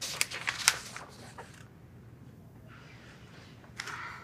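Crisp rustling and handling noises of a grey fabric item being turned over in the hands: a quick flurry in the first second and a half, then room tone, with one more brief rustle near the end.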